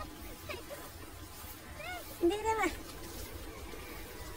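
A person's voice calling out once, about two seconds in, for about half a second, the pitch rising and then falling.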